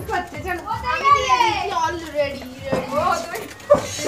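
Children and adults talking and calling out close by, with a long high-pitched child's call rising and falling about a second in. A short sharp knock comes just before the end.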